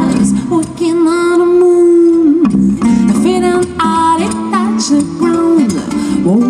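Live acoustic trio music: a woman singing with vibrato, holding one long note about a second in, accompanied by a plucked acoustic guitar and an acoustic bass guitar.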